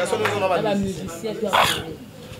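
Speech: a man talking into a handheld microphone, with a short, sharp, breathy vocal sound near the end.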